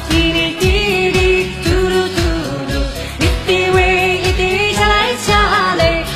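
A woman singing a pop song into a studio microphone over a backing track with a steady drum beat of about two thumps a second, her voice wavering on held notes.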